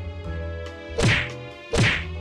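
Background music with steady bass under two loud, sudden whacks, about a second in and near the end, each dropping sharply in pitch into a low thud, like comic impact sound effects.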